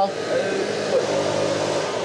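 A man's voice answering briefly, faint and muffled, over a steady low mechanical hum.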